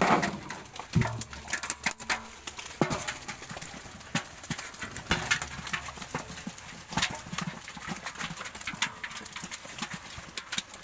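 A metal basin of pangas catfish is set down on a platform scale with a heavy thud about a second in, followed by irregular sharp knocks and slaps from the basin and its fish.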